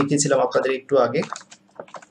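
Typing on a computer keyboard: a few short key clicks, mostly in the second half, with a voice talking over the start.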